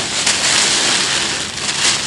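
Plastic bag crinkling and rustling loudly as cooked millet-and-pea porridge is shaken out of it into a bucket of feeder groundbait.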